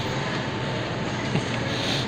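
Steady background noise of a grocery store aisle: an even hum and hiss, with a faint steady tone running under it.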